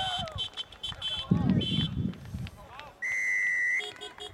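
Players shouting on the field with the thuds of a tackle, then a referee's whistle blown once in a steady, loud blast of just under a second near the end.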